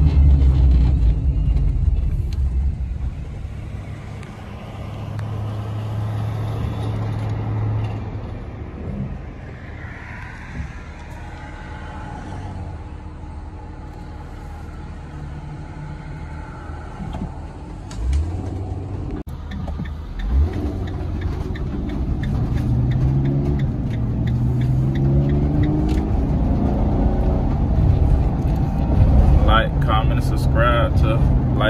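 Delivery van driving on city streets, heard from inside the cab: a steady low engine and road rumble, louder at first and easing off, with two low thumps about two seconds apart later on.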